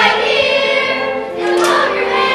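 A musical-theatre number: a cast of young voices singing together over musical accompaniment.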